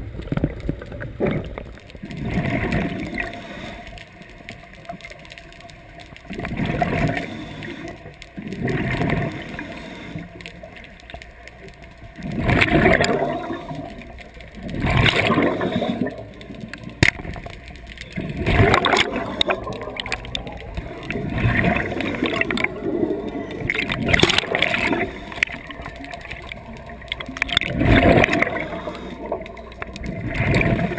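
Underwater gurgling and rushing picked up by a camera in a waterproof housing, swelling in bursts every two to four seconds over a steady low rumble.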